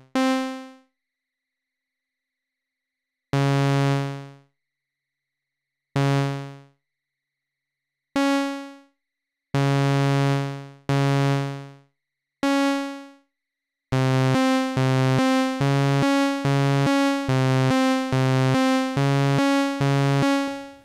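Roland SH-101 analog synthesizer playing single bright notes one at a time, each dying away when the key is let go, as notes are put into its step sequencer. About fourteen seconds in, the sequence starts playing back as a steady looping pattern of short notes, jumping between a low and a higher pitch.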